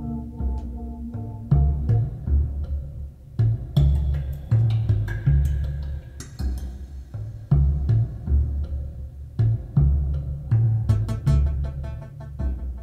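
Music with deep, slow, repeating drum beats and sharp high transients, played back over large floor-standing hi-fi speakers fitted with Fostex T90A horn supertweeters and heard in the room.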